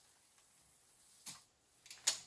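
Graco Verb stroller frame being unfolded by hand, mostly quiet handling with one short sharp click a little over a second in.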